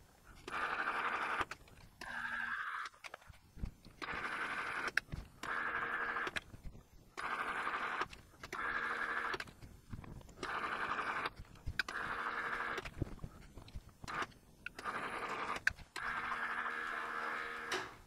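Precision Matthews PM-1127 metal lathe running in short bursts with a steady gear whine. The bursts start and stop about eight times, each about a second long, roughly every two seconds, as passes are taken cutting an M10 × 1.5 metric thread on a steel stud.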